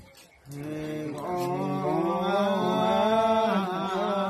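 Ritual chanting by a male voice in long, drawn-out held notes, starting about half a second in.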